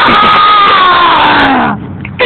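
A child's long, very loud yelled scream, a battle cry, sliding down in pitch and breaking off near the end.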